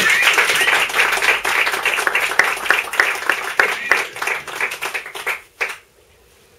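Small audience applauding: a dense patter of clapping that starts suddenly, thins out over the last two seconds and stops shortly before the end.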